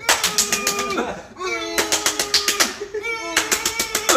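A man's voice making three held, rapidly pulsing vocal sounds, each about a second long. It is a playful demonstration of fans cheering at a concert without screaming out loud.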